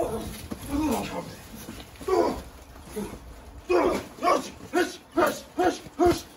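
A dog barking: a few scattered barks, then a quick run of about two barks a second from about halfway through.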